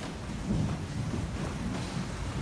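Low, rumbling background noise with no speech, rising slightly about half a second in.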